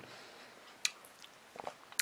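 Quiet mouth sounds of a person eating a spoonful of fruit yogurt, with one short sharp click about halfway through.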